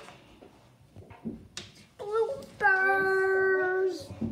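A child's voice singing briefly, ending in one long held note that stops just before the end.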